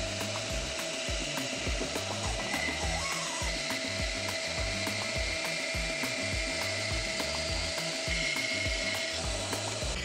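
Bandsaw running steadily as its blade cuts through a thick wooden board, with a low, regular beat of background music underneath.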